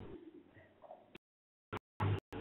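Near silence: faint line hiss with two faint, brief sounds, cut off to nothing about a second in.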